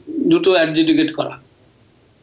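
Man's voice, speech sounds trailing into a drawn-out, level-pitched hesitation sound, then a short pause about one and a half seconds in.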